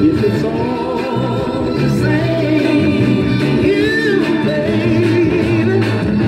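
A Northern Soul 7-inch single playing on a turntable: a soul vocal sings a wavering melody over the band's steady backing.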